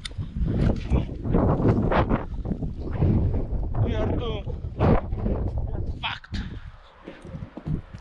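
Wind buffeting the microphone and handling noise from a handheld camera as a man runs over rough ground, with a short burst of his voice about four seconds in.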